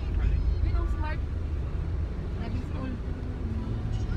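Steady low rumble of a car's engine and road noise heard inside the cabin as it drives.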